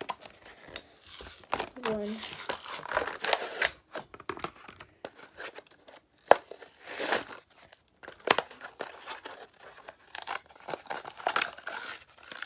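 Cardboard-and-plastic blister pack of a toy car being torn open by hand: the card backing rips and the clear plastic blister crinkles and cracks in a run of irregular rips and sharp crackles.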